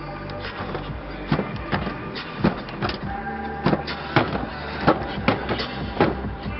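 Background music: a held electronic bed of steady tones with a run of sharp percussive hits, about two a second.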